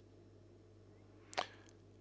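Near silence with a faint steady hum, broken by one short, sharp click a little past halfway.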